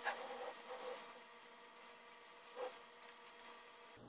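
Quiet, faint sounds of a serrated knife working along the edge of a sponge cake, with a short soft scrape about two and a half seconds in.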